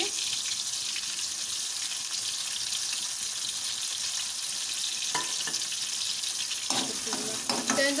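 Chopped tomatoes frying in hot oil in a pan, sizzling steadily. Near the end a metal spoon stirs and scrapes the pan, adding a few clicks.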